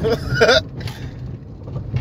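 Steady low rumble of a car heard from inside the cabin, with a short laugh from a man about half a second in.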